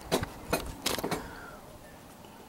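A handful of short, sharp clicks and knocks in the first second or so, then a low background: handling noise from the camera being panned and zoomed.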